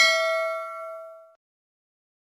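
Notification-bell sound effect on an end card: a single bright, bell-like ding that rings and fades away by about a second and a half in.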